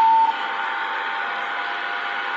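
Receiver hiss from a Kenwood handheld ham transceiver tuned to 7.150 MHz, with a steady Morse-like whistle laid over it: radio-frequency interference from a Samsung phone charger plugged in nearby. The loudest whistle cuts off sharply about a third of a second in, leaving a steady hiss with fainter whistles.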